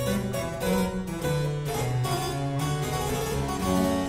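Baroque chamber music with no voice: a harpsichord playing over a held bass line.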